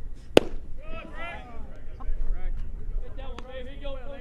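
A pitched baseball smacking into the catcher's mitt: one sharp, loud pop less than half a second in. Voices talk in the background.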